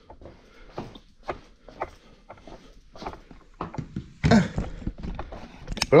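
Irregular light clicks and knocks with a louder thump a little over four seconds in: handling noise and footsteps as a smartphone is carried and handed over in a small room.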